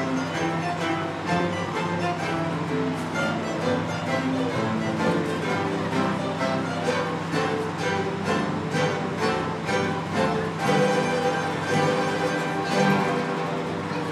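A guitar-and-mandolin ensemble (mandolins, classical guitars and a double bass) playing a piece live, a steady flow of plucked notes.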